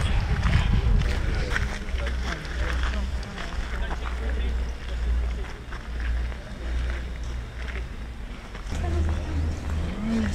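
Wind rumbling and buffeting on the camera microphone, with faint voices of people talking in the background.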